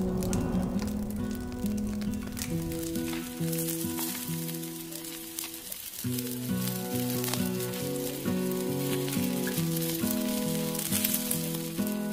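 Background music of slow, held chords changing every second or so, over a sizzling, crackling hiss.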